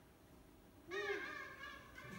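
A performer's voice giving one drawn-out vocal call, starting about a second in, its pitch rising and then falling, lasting about a second.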